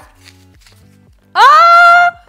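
A woman's loud cry of surprise, "O!", its pitch rising sharply and then held for most of a second, as the fruit-purée pouch she is opening spurts onto her sofa. Quiet background music with low notes plays underneath.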